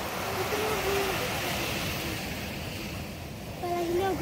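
Ocean surf washing steadily onto a sand beach, with faint voices under it, one rising near the end.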